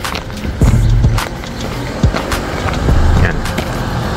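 Footsteps of a person walking on asphalt, a few irregular steps each second, with uneven low rumbling on the microphone and music playing underneath.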